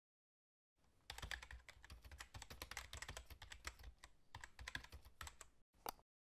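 Computer keyboard typing: a quick, uneven run of faint key clicks starting about a second in and going on for over four seconds, with one last click near the end.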